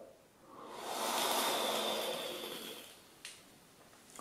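A long breathy drag on an electronic cigarette, swelling and fading over about two and a half seconds with a faint whistle of air, followed by a light click.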